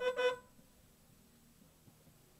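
Vehicle horn giving two quick toots in a fraction of a second.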